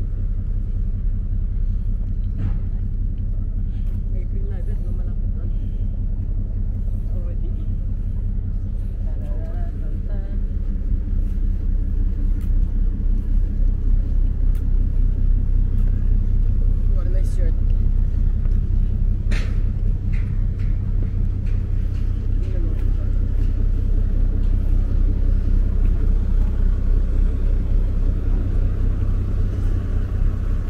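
A steady low engine rumble, getting somewhat louder about halfway through, with faint voices and a few sharp clicks over it.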